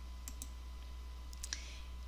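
A few faint clicks over a steady low electrical hum: two close together about a quarter second in and two more around a second and a half in, from a computer mouse clicking to advance the slides.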